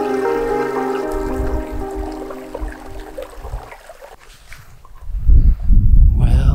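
Ambient music with long, held tones fading out about four seconds in, over the soft trickle of water from a small seep running over moss and rocks. A loud low rumble comes in near the end.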